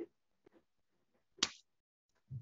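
A single short, sharp click about a second and a half in, with a fainter tick at the start, in otherwise near silence.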